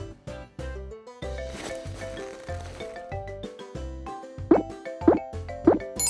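Light children's cartoon background music with a steady bass beat. Near the end come three short cartoon 'plop' sound effects, each rising and falling in pitch, about half a second apart.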